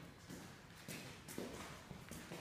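A few faint footsteps on a hard floor.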